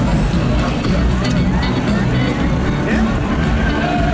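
Hip-hop music with a steady heavy bass, heard over the rumbling noise of riding among a large crowd of cyclists.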